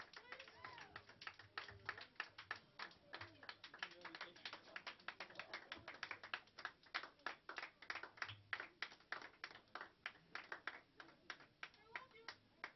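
Light, scattered clapping from a few people in a small audience, quiet and uneven, with faint voices behind it.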